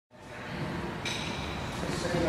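Sports hall ambience fading in: a reverberant noisy hum of an indoor court, with a sudden, brighter sound joining about a second in.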